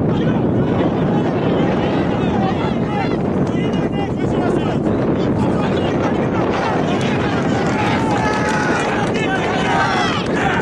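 Crowd and players shouting and cheering at a rugby match, the calls getting busier in the second half as a try is scored, over steady wind buffeting the microphone.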